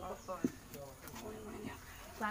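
Faint voices, with a single sharp knock about half a second in.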